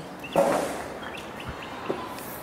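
A few faint, short bird chirps over outdoor background noise, with a brief rustling noise about half a second in.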